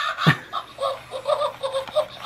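Motion-activated Pennywise plush toy's electronic voice laughing through its small built-in speaker: a run of quick cackling syllables with little bass.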